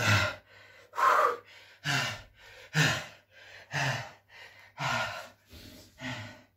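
A man breathing hard after finishing a long set of burpees: a loud, gasping breath about once a second, with quieter breaths between.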